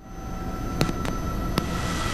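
Bell 206B helicopter's cabin noise fading up from silence: a steady rumble of the turboshaft engine and rotors with thin high whines above it. Three sharp clicks come in, about a second in and again shortly after.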